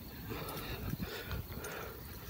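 Faint, irregular footsteps with a few soft knocks and rustles, someone walking across a weathered wooden deck and onto grass.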